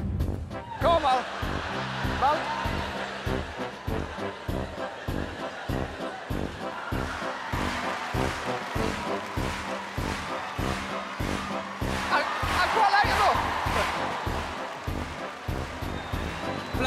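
Upbeat backing music with a steady, even beat, with voices whooping and laughing over it just after the start and again about twelve seconds in.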